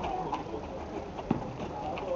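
Outdoor basketball court ambience: faint background voices and two short knocks from the ball game on asphalt, the sharper one a little past halfway through.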